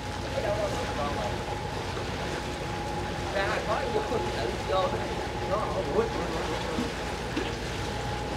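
A barge's engine running steadily at low speed while the barge is being brought in to moor, over a steady hiss of wind and rain. Faint voices call out now and then.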